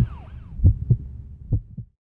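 Heartbeat sound effect: low double thumps, about one pair a second, growing fainter and cutting off at the end. A wailing siren sound dies away in the first half second.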